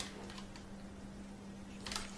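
Quiet room tone with a steady low hum and a few faint clicks, one sharper click near the end.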